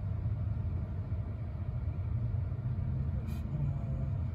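Steady low rumble of a car cabin while stopped: an electric car sitting still, with no engine note, only low background drone from traffic and the cabin itself.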